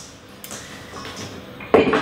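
Soft handling of yeast dough in a stainless steel mixing bowl, then one loud metallic clank with a short ring near the end as the bowl is knocked while being lifted to turn the dough out.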